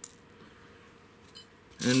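A single short metallic clink about a second and a half in, small cleaned silver rings and a coin being set down against one another on a towel, over otherwise quiet room tone. A man's voice starts just at the end.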